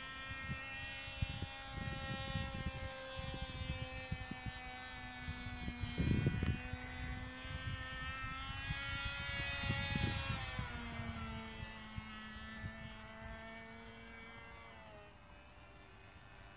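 Cox .049 Tee Dee two-stroke glow engine buzzing steadily at a high pitch on a model airplane in flight. Its pitch drops twice, about two-thirds of the way through and again near the end, and it grows fainter toward the end. Low buffeting of wind on the microphone comes and goes, heaviest about six seconds in.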